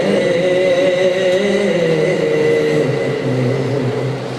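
A man's voice chanting over a microphone: long held notes that waver slowly in pitch, with no breaks for words, and a steady high tone underneath.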